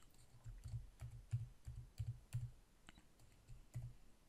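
Faint keystrokes on a computer keyboard: an irregular run of about a dozen quick taps as a short word is typed.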